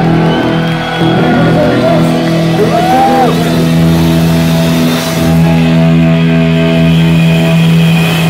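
Heavy metal band playing live at high volume: distorted electric guitars hold a sustained, ringing chord, with a short rising-and-falling pitch glide about three seconds in.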